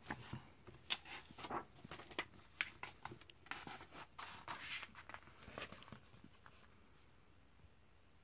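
Pages of a comic book flipped by hand: a quick run of paper rustles and crisp page flicks that stops about six seconds in.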